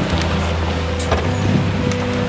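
Open safari jeep's engine running steadily as it drives along a dirt track, with rushing wind noise on the microphone.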